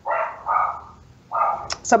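A dog barking three times in short, separate barks, picked up faintly through a call participant's microphone; a voice starts near the end.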